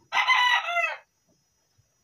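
A rooster crowing once: a single loud call lasting just under a second that drops in pitch at its end.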